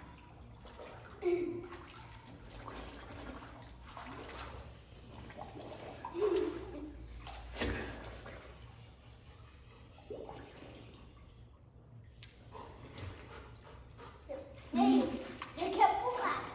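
Swimming-pool water sloshing and splashing softly around a swimming child, with the child's short vocal sounds now and then, louder near the end.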